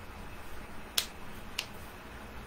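Two short, sharp clicks about half a second apart, the first louder, over quiet room noise.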